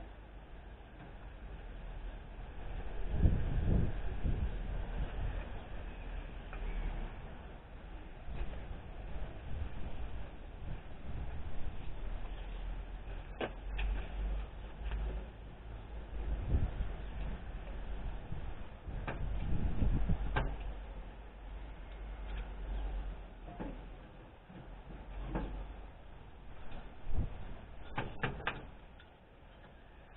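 Hand-work noise from an engine bay as old fan belts, slightly stuck in their grooves, are worked off an A/C compressor pulley: rubbing and scraping with a few sharp clicks and knocks, and low rumbles in two spells.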